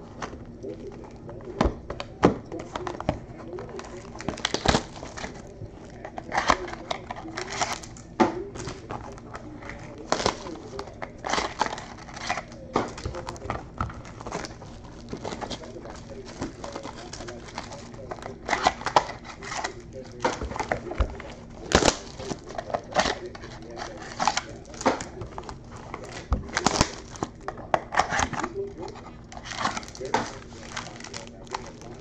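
Sports-card boxes and foil-wrapped card packs being handled: wrappers crinkling, with frequent irregular knocks and clicks as boxes are opened and packs and boxes are set down on a table.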